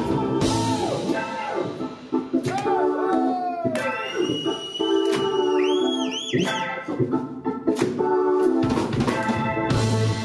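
Live blues-rock band in an instrumental break. The bass and drums drop out about two seconds in, leaving long held lead notes that bend up and down in pitch. The full band with drums comes back in about seven seconds in.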